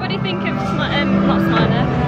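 People's voices talking over background music with held notes.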